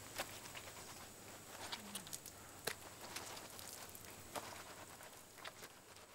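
Quiet outdoor background with a few faint, scattered taps and clicks, about one every second or so.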